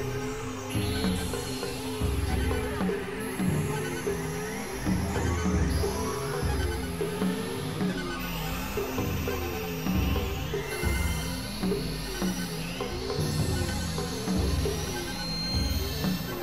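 Layered experimental electronic music: a repeating low melodic figure over pulsing bass, with gliding sweeps higher up.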